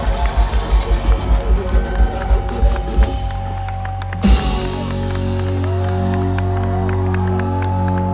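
Rock band playing live at a song's ending: an even drum beat for about three seconds, a single hit about four seconds in, then a chord held out while the crowd cheers.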